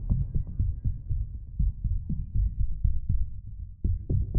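Electronic dance music in a breakdown: a bass-heavy beat pulsing about four times a second with its high end filtered away, leaving only the low thump, until the full mix comes back in at the end.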